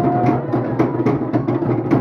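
Fast, steady Polynesian drumming for a dance show, a driving beat of about four or five strikes a second over a deep drum.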